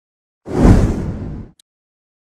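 A single produced whoosh sound effect with a deep low boom under it, part of an animated logo intro. It starts about half a second in, is loudest at its onset, and cuts off after about a second.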